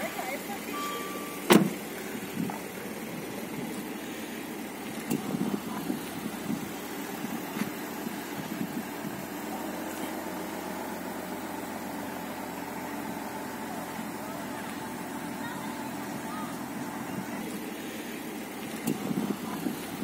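A Maserati sedan's door shuts with a single sharp thud about a second and a half in, followed by a steady low hum of the car's engine idling, with faint voices now and then.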